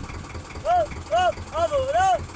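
A person calling out a short, rising-and-falling, high-pitched 'aab' over and over, about twice a second, while a fish is being fought on rod and reel. A low, steady boat-engine rumble runs underneath.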